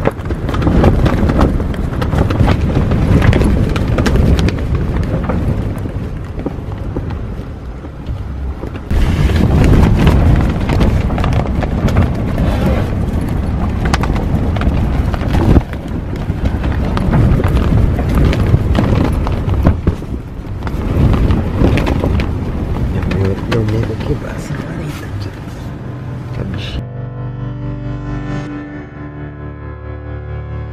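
Strong gusting wind buffeting a car rooftop tent, heard from inside: a loud rush of wind with the tent fabric flapping and snapping in surges. Near the end the wind gives way to soft music.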